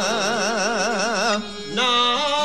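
Izvorna folk music from Posavina: a long held note with a quick, even vibrato over the accompaniment. It breaks off about three-quarters of the way through, and a new held note comes in just before the end.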